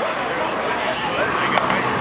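Distant voices over a steady outdoor background noise.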